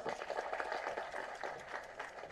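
Faint, scattered audience applause: many quick hand claps blurring into a steady patter.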